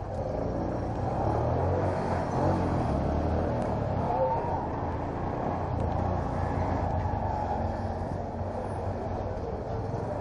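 Honda commuter motorcycle running at low speed in city traffic: a steady low engine rumble from the rider's position, mixed with the noise of the surrounding street traffic.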